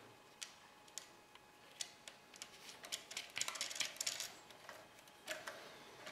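Faint metallic clicks and taps as a wing nut is threaded by hand onto a bolt and the metal aerial bracket and grid rods are handled, with a busier run of clicking about three to four seconds in.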